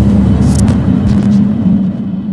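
Logo-reveal sound effect for a channel intro: a loud deep rumble with a steady low hum under it, and brief bright swishes about half a second and a second in. It eases off near the end.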